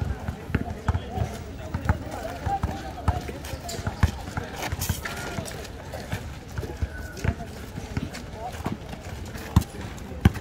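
A basketball bouncing on asphalt in irregular dribbles, along with players' sneaker footsteps, with a sharp thud a little before the end.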